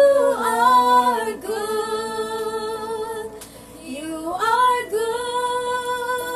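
Several voices, women's the most prominent, singing a slow worship song together without instruments, in long held notes; about four seconds in the melody slides up to a higher note and holds there.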